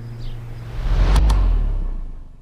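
A low rumbling whoosh transition effect swells about a second in, with two quick clicks at its peak, then fades away as the background music ends.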